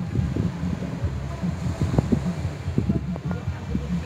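Wind buffeting the microphone in uneven gusts, a heavy low rumble, with faint sea surf beneath.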